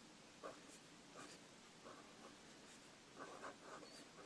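Faint scratching of a Staedtler Pigment Liner 0.3 fineliner drawing short strokes on notebook paper, a few separate strokes and then a quick cluster of them near the end.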